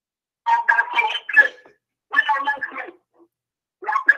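A man's voice coming through a phone line, thin and garbled, in two short bursts about a second long; the words cannot be made out.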